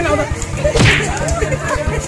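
A whip-like swish, once about a second in, sweeping down from a hiss to a low thud, used as a hit effect in a staged fight. Voices cry out beneath it over a steady low hum.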